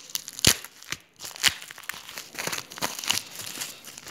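Plastic bubble wrap of a padded envelope crinkling and crackling as it is handled, in irregular sharp crackles, the loudest about half a second and a second and a half in.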